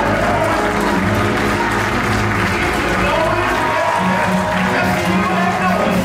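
Church music with sustained chords over a steady bass line, with applause and a man's voice calling out over it.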